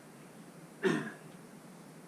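A man's voice: one short, gruff 'okay' just under a second in, against quiet room tone.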